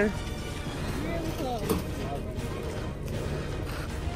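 Faint voices of people talking a little way off, over a steady low rumble on the microphone.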